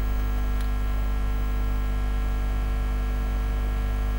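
Steady electrical mains hum with evenly spaced overtones, unchanging throughout.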